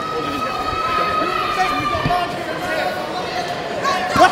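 Shouts and voices from ringside spectators and corners during a boxing round, with long held calls carrying over the hall. A single thud comes about halfway through.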